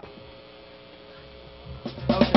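Steady electrical hum from a live band's amplifiers, with a faint held tone. A low rumble builds near the end and the band comes in loudly at the very end.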